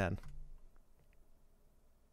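A man's voice finishes one short word, then near-quiet room tone with a couple of faint clicks about a second in.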